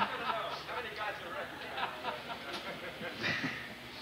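Brief laughter at the start, then indistinct talking from several people in the background.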